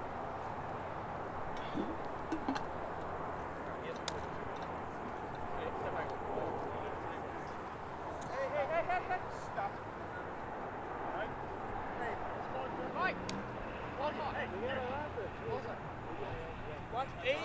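Distant, indistinct shouts and calls of players across an open soccer field over a steady outdoor background, with a few sharp knocks.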